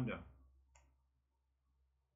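A man's voice ending a word, a short click just under a second in, then near silence with a faint low hum.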